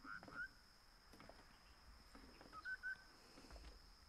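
Near silence with faint bird chirps: a quick pair of short chirps at the start, then another short group about two and a half seconds in.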